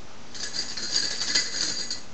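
Computer mouse being handled at the desk: a rapid rattle of small clicks that starts about a third of a second in, with two louder spots in the middle.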